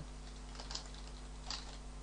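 A few scattered computer keyboard and mouse clicks, the strongest about one and a half seconds in, over a steady low hum.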